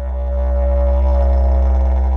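Didgeridoo playing one steady, low, unbroken drone that swells slightly in loudness, its bright overtone slowly drifting.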